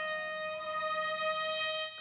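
A race starting horn sounding one long, steady note that stops near the end.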